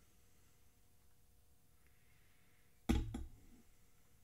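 Faint room tone, then about three seconds in a sharp click and a second, smaller one just after: a new plastic pad snapping over its lip onto a Porsche 996 VarioCam solenoid assembly. The word 'all' is spoken over the clicks.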